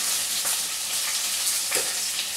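Food sizzling in hot oil in a pan on a stove, a steady hiss.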